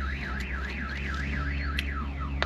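A car alarm siren warbling rapidly up and down in pitch, about five sweeps a second, fading out near the end.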